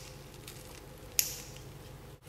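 Scissors cutting through a foam household sponge, with one sharp snip about a second in as the blades close through the foam.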